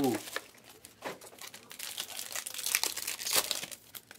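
Foil wrapper of a Panini Prizm Choice trading-card pack crinkling as it is handled and opened: a string of irregular sharp crackles, loudest about three seconds in.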